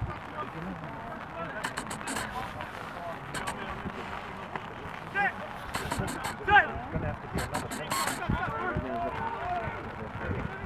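Men's shouts and calls across an open rugby pitch as play runs, the loudest shout about six and a half seconds in, with a few short sharp knocks among them.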